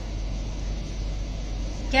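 Steady low hum and hiss of a window air conditioner running.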